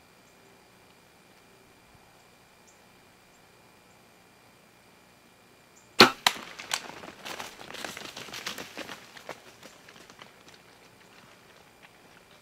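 A single sharp shot from a Bowtech compound bow about six seconds in, with the arrow striking a whitetail buck. It is followed by a few seconds of crashing and rustling that fade away as the deer bolts off through the brush.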